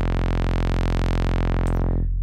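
A low, buzzy sawtooth tone from a software modular synth oscillator, held steady through a Playertron Jadwiga single-pole low-pass filter, which leaves it bright at a gentle six-decibel-per-octave slope. Near the end the highest overtones fall away as a second filter stage steepens the slope to two poles.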